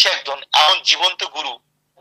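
A man speaking in Bengali, with a brief pause near the end.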